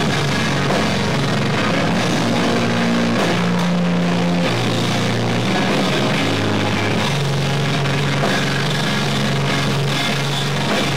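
Live screamo band playing at full volume: distorted electric guitars and a drum kit, with low notes held about a second each and changing pitch. The sound is loud and distorted, as caught by a camcorder's built-in microphone.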